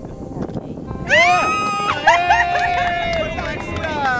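A person's high voice singing a note: it swoops up about a second in, then holds one long steady pitch, over quiet group chatter.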